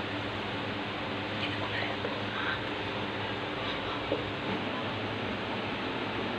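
Steady hiss of water boiling in an aluminium pressure cooker on a gas burner, with a low steady hum underneath and a single small tick a little after four seconds.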